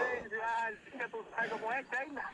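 Speech: a voice talking.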